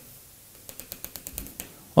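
Plastic stylus tip tapping on a drawing-tablet screen as short dashes are drawn: a quick run of light clicks, about ten in a second, starting about two thirds of a second in.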